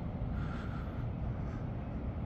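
Steady low rumble of a grounded bulk carrier's diesel engine running just after start-up, heard from the shore across the water.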